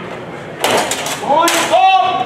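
Steel longswords meeting in a fencing exchange: a short harsh burst a little over half a second in, then a sharp crack about a second and a half in, with voices calling out around the crack.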